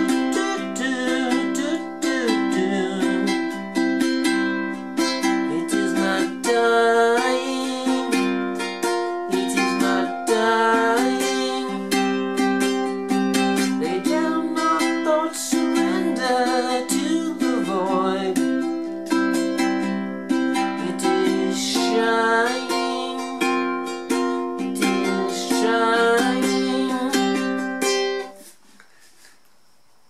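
Ukulele strummed steadily as a one-chord drone accompaniment, moving between C, C7sus and C5 shapes up the neck. The playing stops about two seconds before the end.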